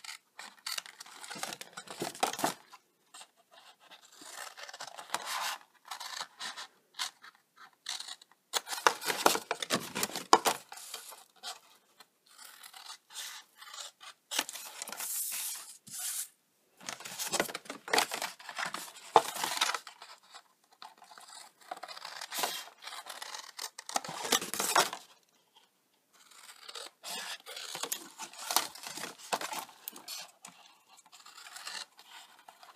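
Scissors cutting through cardstock in a series of snips. The cuts come in bursts of a second or two with short pauses between, mixed with the card scraping and rubbing as it is handled.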